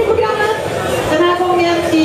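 A woman's voice over a hand microphone and PA, announcing with long drawn-out syllables held on one pitch.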